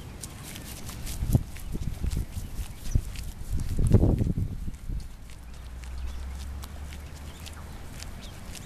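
Footsteps on a paved path, with low rumbling on the microphone that is strongest about four seconds in, then a steady low hum.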